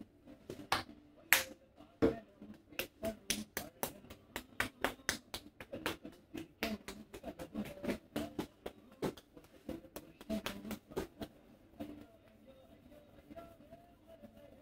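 Barber's hands clapping and slapping on a customer's head during an Indian head massage: a quick, irregular run of sharp claps, several a second, that stops a couple of seconds before the end.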